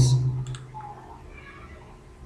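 A single computer mouse click about half a second in, as the tail of a man's voice fades; then a low, steady background.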